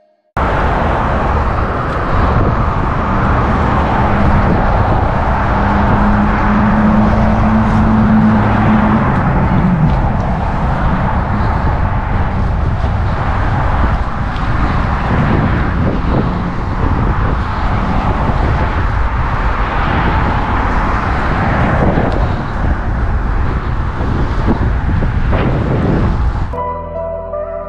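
Wind on the microphone of a bicycle-mounted action camera, with the rumble of fat tyres rolling over asphalt and then paving stones as the bike is ridden. A low steady hum joins in about four seconds in and falls away about nine seconds in.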